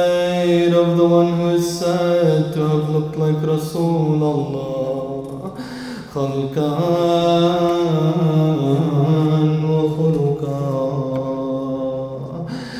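A man chanting a mournful Arabic lament (latmiya) solo in long, drawn-out melismatic phrases. The voice sinks at the end of one phrase about halfway through and starts a new one straight after.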